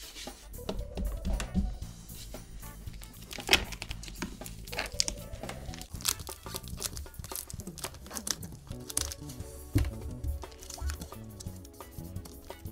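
Auto body vinyl wrap being peeled off a drum shell and rolled up as it comes away, with short crinkling and tearing crackles. Background music plays underneath.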